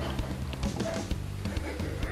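Quiet background music: low held bass notes that shift in pitch now and then, with no speech over them.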